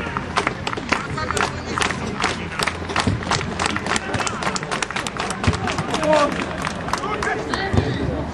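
Small crowd of football spectators clapping in a quick, steady rhythm, about four claps a second, with a few men's shouts near the end.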